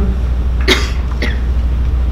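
A person's short cough about two-thirds of a second in, followed by a fainter one half a second later, over a steady low hum.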